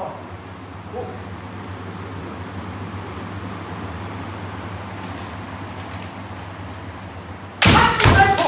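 Steady low room hum while two kendo fencers hold their stance. Near the end comes a sudden loud strike: bamboo shinai hitting armour and a stamping foot on the wooden floor, with a kiai shout starting.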